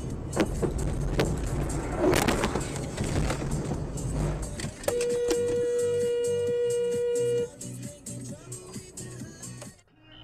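Dashcam audio of city traffic: road and engine noise with scattered clicks. About five seconds in, a vehicle horn sounds one steady blast held for about two and a half seconds.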